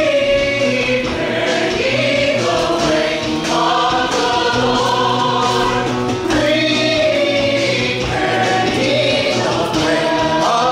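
Stage musical cast of men and women singing together in chorus with band accompaniment, holding long sung notes.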